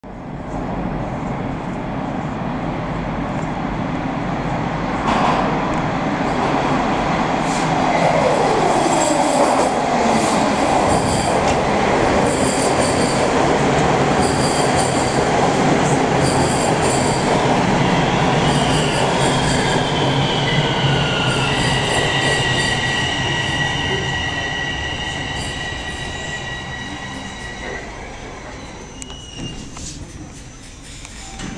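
A Bombardier Toronto Rocket subway train pulling into a station platform, its rolling and motor noise building over the first few seconds. About eight seconds in, a whine falls steadily in pitch. In the last third, high squealing tones ring out as the train brakes, and the noise fades as it comes to a stop.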